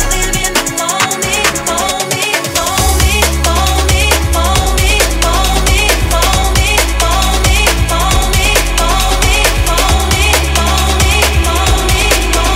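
Electronic breakbeat dance music from a DJ mix: fast, busy drum hits under a repeating synth riff. A heavy sustained sub-bass drops back in about three seconds in and carries on under the beat.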